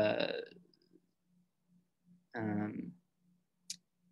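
Conversational speech over a video call: a phrase trailing off at the start, a short voiced hesitation sound about two and a half seconds in, and a single brief click near the end.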